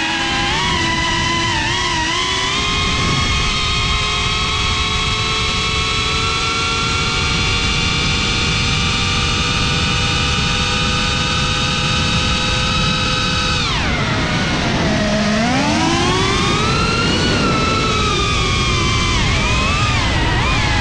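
FPV quadcopter's brushless motors and propellers whining, recorded by the on-board GoPro, over a rushing noise of wind and prop wash. The whine holds its pitch and slowly rises, then falls sharply about fourteen seconds in as the throttle is cut, and climbs back up over the next few seconds as throttle is reapplied.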